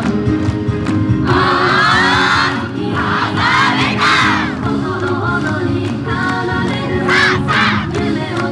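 Yosakoi-style dance music playing with a steady beat. Loud group shouts cut in over it three times: about a second in, around three to four seconds, and about seven seconds in.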